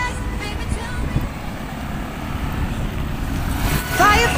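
Wind rumbling on a chest-worn camera's microphone while riding a bicycle along a street, with road traffic in the background.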